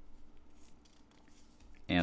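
Faint rustle of hands on glossy catalog pages, then a man's voice starts speaking near the end.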